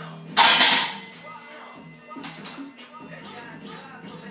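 A loaded barbell set back into the steel J-hooks of a power rack: one loud metal clank with a short rattle about half a second in. Background music with vocals plays throughout.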